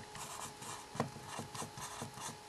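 Marker pen writing on a whiteboard: a run of short scratching, rubbing strokes, with one sharper tap of the pen tip about halfway through.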